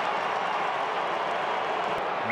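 Stadium crowd noise from a large football crowd: a steady, even hubbub.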